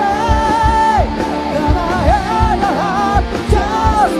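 Live rock band playing: a man sings lead over electric guitars, bass and drums, holding one long note about a second long near the start.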